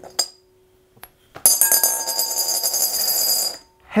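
A flipped coin landing in a large glass mixing bowl: a small clink as it is picked up from the glass, then about a second and a half in it lands and spins and rattles against the bowl with a bright ringing for about two seconds, stopping suddenly as it settles flat.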